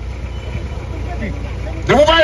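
A steady low rumble of background noise fills a pause in a man's speech, and his voice comes back right at the end.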